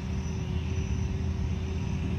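Steady low outdoor rumble with a faint steady hum.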